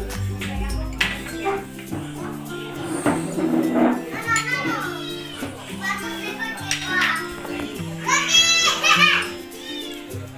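Background music with steady held notes, with high children's voices over it, loudest near the end.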